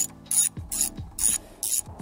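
Socket ratchet clicking in repeated short strokes while a bolt is being loosened on a motorcycle, a burst of clicks roughly every half second.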